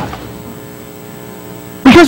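Steady electrical mains hum, a low buzz with many even overtones, from the recording's sound system; a man's voice comes in near the end.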